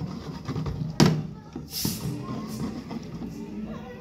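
A single sharp knock about a second in as a plastic water bottle with water in it is set down on a wooden tabletop, followed by a short hiss, over background music and room noise.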